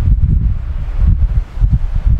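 Loud low rumbling and rustling of a clip-on microphone rubbing against a shirt as its wearer moves, in uneven pulses.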